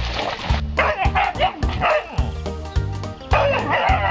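Huskies barking and yipping in rough play, over background music with a regular bass beat.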